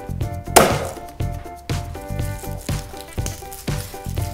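A hand slamming down hard on a whole garlic bulb on a wooden cutting board: one loud thud about half a second in that breaks the head apart into cloves. Background music with a steady beat runs under it.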